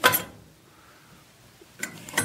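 A sharp metallic clank with a brief ring from the stainless-steel front fittings of a batch ice cream freezer being handled, followed by a fainter click near the end.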